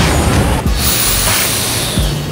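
A car driving past close by: a loud, steady hiss of tyre and road noise that gets brighter about halfway through.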